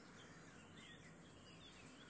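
Near silence: a faint steady hiss with faint bird chirps in the background.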